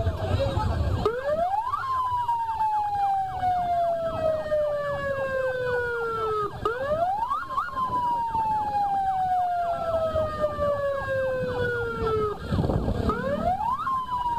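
Police vehicle siren wailing: each cycle rises quickly in pitch and then falls slowly over about five seconds, three cycles in all, with crowd voices underneath.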